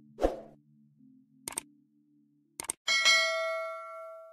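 Subscribe-button animation sound effects: a soft thump, then two pairs of quick mouse clicks, then a bell ding that rings out near the end, over a faint low hum.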